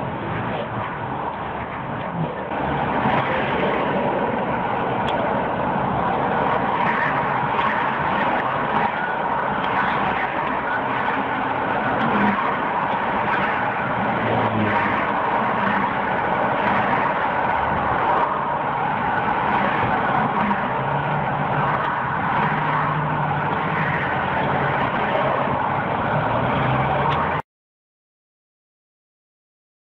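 A car driving, heard from inside: steady engine and road noise with no clear events, growing a little louder a couple of seconds in and cutting off suddenly near the end.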